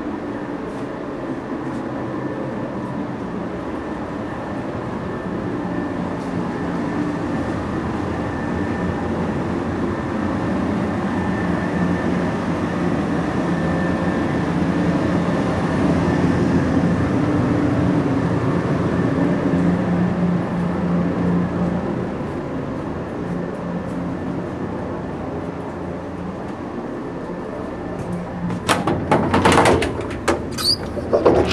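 Steady hum and rumble inside a JR East 113 series electric train car, with faint steady tones, growing louder toward the middle and easing off again. Sharp clattering comes near the end.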